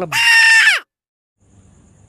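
A loud, high-pitched cry lasting under a second, its pitch dropping at the end, then cut off abruptly into silence.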